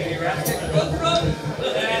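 People's voices in a bar room between songs, with no music playing and a sharp click about half a second in.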